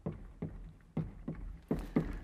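Chalk writing on a blackboard: a quick string of short taps, about three a second, as letters are stroked out.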